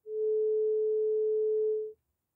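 A steady 432 Hz sine tone from an online tone generator, played on its own with no beating, fading in at the start and stopping just before the end of about two seconds.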